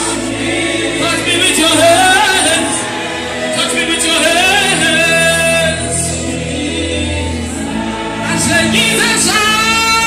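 Gospel worship singing with musical accompaniment: long, held sung notes that slide up and down over steady low notes.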